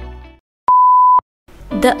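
A single loud, steady electronic beep lasting about half a second, a plain one-pitch tone, coming after the background music has faded out; a voice starts just before the end.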